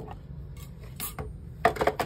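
Hard plastic cutting plates and a thin metal cutting die clicking and clacking as they are handled and taken apart after a run through a die-cutting machine. There is one sharp click about a second in and a quick cluster of clacks near the end.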